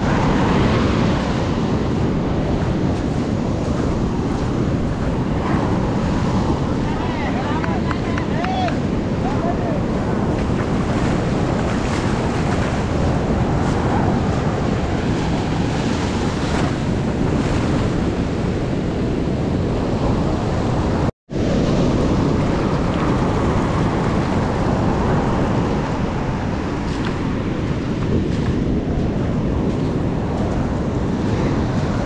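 Rough monsoon-season sea surf breaking and washing up a sandy beach at close range, with wind buffeting the microphone. The sound cuts out briefly about two-thirds of the way through.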